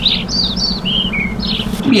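Cartoon songbirds chirping as an added sound effect: about eight short, high chirps, several sliding down in pitch, over a low steady hum that cuts off just before the end.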